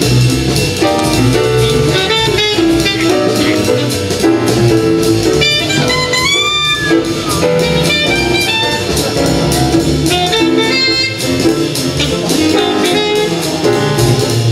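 Live small-group jazz: an alto saxophone plays a fast line of quickly changing notes over upright bass and drum kit, with cymbals ringing throughout.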